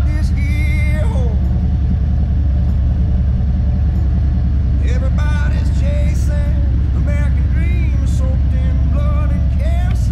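Steady low rumble of a Harley-Davidson Road Glide Special's V-twin engine and road noise while riding, with a song with a singing voice playing over it.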